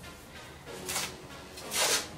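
Black peel-off face-mask film being pulled off the skin: two short rasping rips, about a second in and just before the end, the second one louder, over faint background music.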